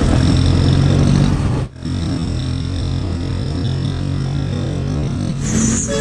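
Motorcycle engine running steadily while riding through traffic. Its hum drops out for a moment under two seconds in, then goes on a little quieter.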